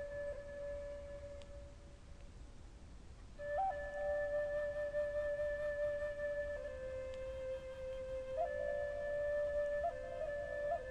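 Slow flute music of long held notes. One note fades out about a second and a half in; after a short quiet gap the flute comes back about three and a half seconds in with long sustained notes that step slightly down and then up again.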